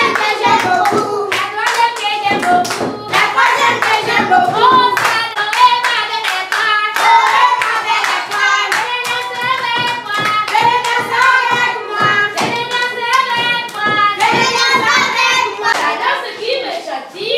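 A group of children and adults singing a classroom song together, clapping hands along with it: sharp claps a few times a second under the held sung notes.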